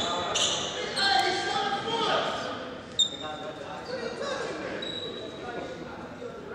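Basketball game sounds in an echoing gym: a ball bouncing on the court and short high squeaks, with a single sharp knock about halfway through, over background voices.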